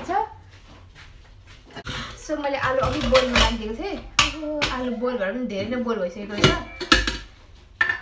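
Metal cookware clattering on a stovetop: a pot lid is lifted and aluminium pots and a utensil knock together, with a few sharp clanks about four seconds in and again near the end.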